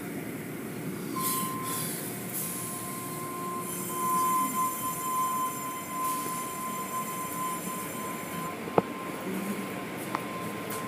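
Automatic car wash tunnel machinery running, heard from inside a car: a steady rush of spray and brush noise with a high, steady squeal that sets in about a second in and stops shortly before the end. A single sharp click comes near the end.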